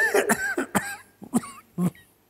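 A person coughing and clearing the throat, ending in two short separate coughs in the second half.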